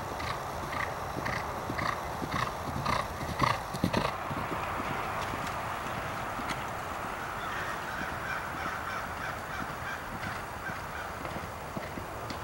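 A horse galloping on turf: a rhythmic beat from its strides, about two a second, which stops abruptly about four seconds in, leaving a steady outdoor hiss.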